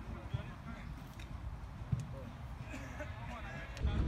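Distant, indistinct voices of players and onlookers on a football pitch, over a steady low rumble; the rumble gets louder just before the end.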